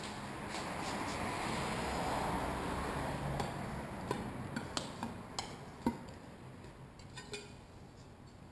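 A broad rushing noise swells and fades away over the first six seconds, with a few light clicks and taps of hand tools handled against glass about three to six seconds in.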